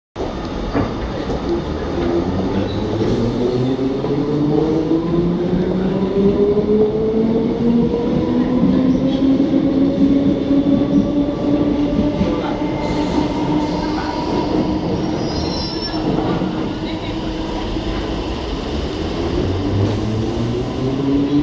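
London Underground District line train accelerating out of the station, its motor whine rising steadily in pitch for about ten seconds and then holding level over the rumble of wheels on the rails as it runs out.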